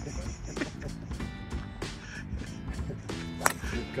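A golf driver striking a ball off the tee: one sharp crack about three and a half seconds in, over background music.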